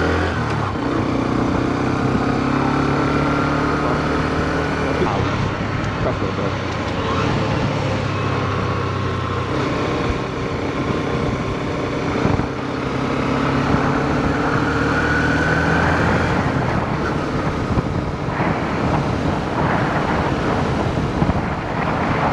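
Honda CB125F's single-cylinder four-stroke engine accelerating up through the gears, its pitch climbing and then dropping back at each change-up, several times over, with wind rushing across the microphone.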